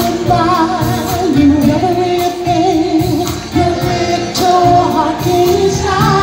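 Live vocal group singing held notes in harmony, with vibrato, over a backing band of drums and electric bass guitar.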